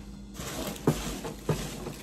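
Rustling of packing peanuts and cardboard as a hand rummages in a shipping box, with two sharp knocks near the middle.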